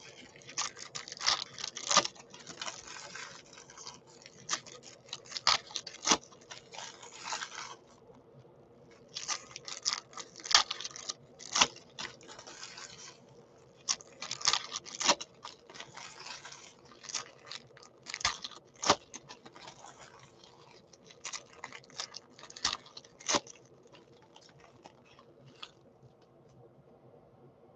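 Foil trading-card pack wrappers being torn open and crumpled by hand: irregular crackling and tearing rustles, with a couple of brief pauses.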